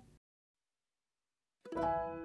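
Silence for about a second and a half, then background music starts near the end, with a few notes that each begin sharply and ring on.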